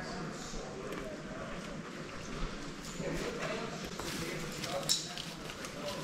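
Faint, indistinct voices with a brief sharp click or tap just before the end.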